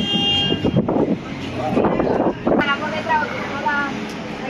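Outdoor street sound with people talking, opening with a short steady horn-like toot that lasts under a second. About two and a half seconds in, the sound changes abruptly to a quieter background with a string of short chirps.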